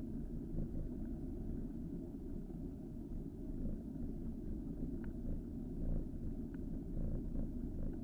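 Steady low rumble of wind buffeting a bicycle-mounted camera's microphone, mixed with road noise from riding, with a few faint ticks.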